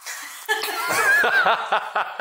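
People laughing, starting about half a second in, with one high wavering voice on top.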